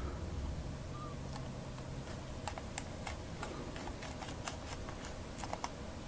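Keys pressed one at a time on an ultra-thin Felix WriteOn Bluetooth keyboard: faint, irregularly spaced clicks.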